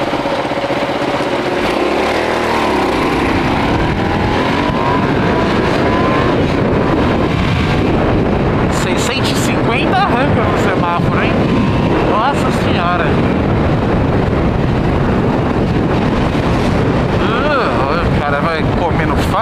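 Kasinski Comet GTR 650 V-twin engine idling at a stop, then revving up and accelerating as the bike pulls away about two seconds in. It keeps running under way with heavy wind noise on the microphone.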